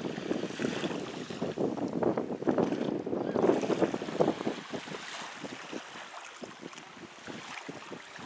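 Small waves of a calm sea lapping and splashing at the shore. The wash is broken and irregular, louder in the first half and easing off after about five seconds.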